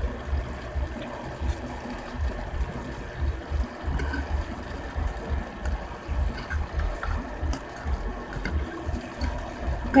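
Noodles being eaten close to the microphone: slurping and chewing, with a few short clinks of a fork and spoon against the bowl, over a steady low hum.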